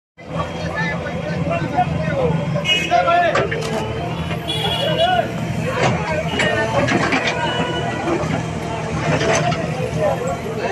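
Backhoe loader's diesel engine running steadily while its bucket works over broken concrete, with several sharp knocks from the rubble. Bystanders' voices carry over it.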